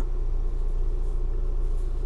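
Ford Bronco idling, a steady low rumble heard inside the cabin.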